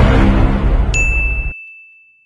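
Sound effects laid over title cards. A loud noisy blast cuts off about one and a half seconds in. A single high ding starts about a second in and rings on as one steady tone.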